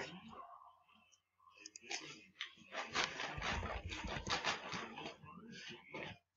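Computer keyboard and mouse clicking in a small room: a quick irregular run of key and button clicks starting about two seconds in, after a brief hush.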